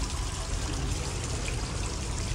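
Water trickling steadily from an indoor water feature, with faint distant voices under it.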